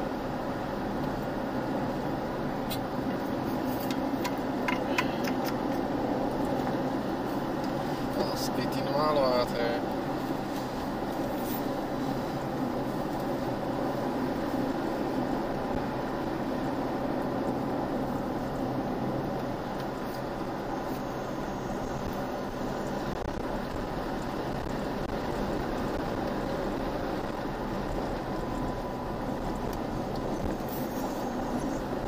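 Steady road and engine noise of a vehicle driving on a gravel road, heard from inside the cabin, with a few faint clicks and a brief wavering sound about nine seconds in.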